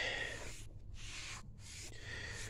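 Foam applicator pad rubbing over a rubber tire sidewall, spreading wet silicone-based tire dressing. The faint swishing comes in three strokes with short pauses between.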